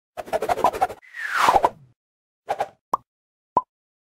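Logo-intro sound effects: a quick run of ticking clicks, then a falling whoosh, then a short burst and two sharp pops.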